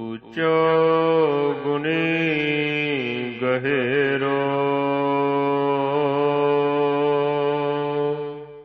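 A man's voice chanting Gurbani in the drawn-out sung style of the Hukamnama recitation. One long syllable dips in pitch twice, then settles on a steady held note that fades out near the end.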